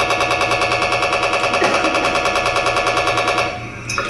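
Hand-held RF radiation meter's audio output giving a rapid, even chattering pulse as it picks up pulsed microwave signals. It cuts off about three and a half seconds in.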